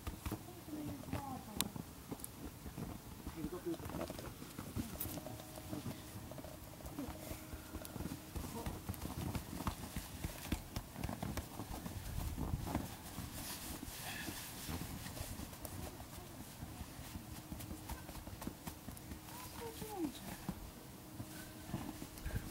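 Snow crunching irregularly under footsteps and hands as people walk about in deep snow and pack it, with faint voices now and then.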